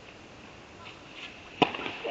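A tennis serve: one sharp crack of the racket striking the ball about one and a half seconds in, followed by a short echo in the indoor hall.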